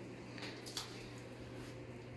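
A hand stirring wet aquarium sand in a plastic bucket of water, faint, with a couple of soft squelches in the first second, over a steady low hum.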